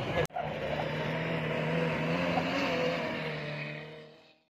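Rally jeep engine running hard at a steady high pitch while the jeep slides across loose sand. A brief cut-out comes about a quarter second in, and the sound fades away near the end.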